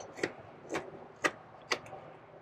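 Carving knife slicing shavings off a wooden spoon blank: four short, sharp cuts about half a second apart.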